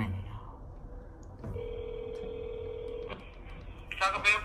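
Telephone ringback tone through a phone's speaker: one ring of the steady tone, about a second and a half long, starting about a second and a half in. It is the sign that the outgoing call is ringing at the other end and has not yet been answered.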